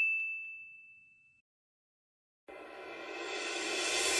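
Intro sound effects: a bright, high ding chime dying away over about a second, then a short pause, then a rising whoosh that swells steadily toward the end.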